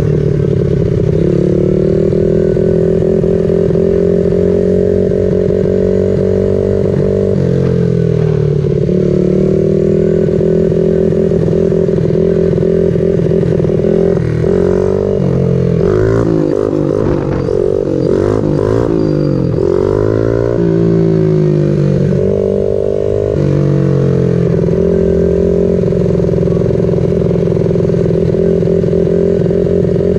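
Honda 50 mini bike's 49cc single-cylinder four-stroke engine running as it rides along. Its pitch is mostly steady, falling and rising several times through the middle stretch as the throttle is eased off and opened again.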